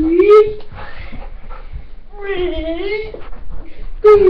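A dog whining in two drawn-out, wavering whines, the first at the start and the second about two seconds in.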